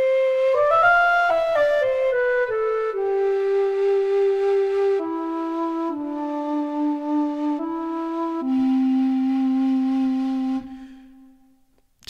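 Ample Sound Dongxiao, a sampled Chinese end-blown bamboo flute, playing its plain sustain articulation. A slow, breathy melody rises briefly, then steps down note by note to a long low held note that fades away near the end.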